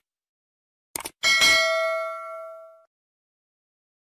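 Subscribe-button animation sound effect: a short mouse click, then a bell chime that dings once and rings out for about a second and a half.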